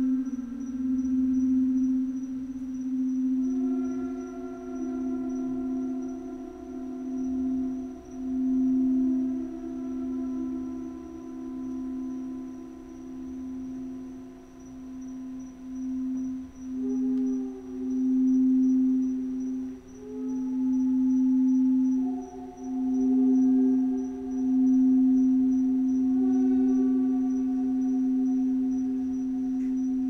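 Crystal singing bowls sounding a long sustained tone that swells and fades in a slow pulse. Higher bowl tones join about three seconds in and again around two-thirds of the way through, layering into a steady chord.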